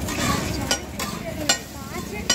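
Metal spatulas scraping and striking a large flat griddle as a heap of burger patty mixture is chopped and stirred, with sharp clanks about two-thirds of a second in and again at a second and a half.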